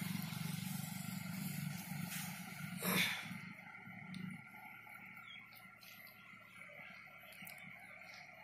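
Cloth bundle stuffed with straw being knotted by hand, with a brief rustle about three seconds in, over a low steady hum that fades out about four seconds in.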